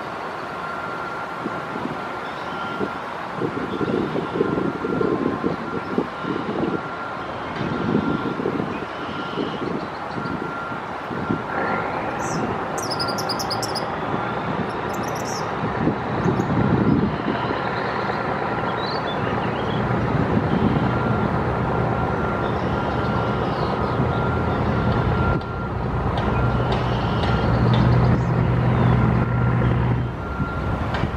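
Wind gusting on the microphone over the steady rumble of road traffic. In the second half a heavy engine's low hum grows louder. A faint high beeping tone repeats steadily throughout.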